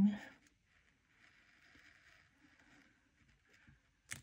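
A craft knife blade drawing one long cut through paper laminated with clear peel-and-stick sheet: a faint, even hiss starting about a second in and lasting about three seconds.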